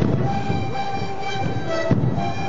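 A sikuri ensemble of massed sikus (Andean panpipes) playing held, chord-like notes together over the beat of large bass drums, with heavy drum strikes near the start and end.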